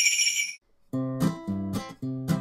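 Hand-held stick sleigh bells shaken, their bright jingle cutting off about half a second in. After a short gap, strummed acoustic guitar music starts.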